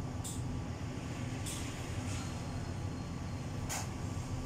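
Steady low hum of salon fans running, with three brief, sharp high hissing sounds from the hairdressing work, about a second or two apart.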